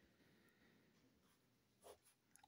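Very faint scratching of a ballpoint pen writing on notebook paper, barely above silence.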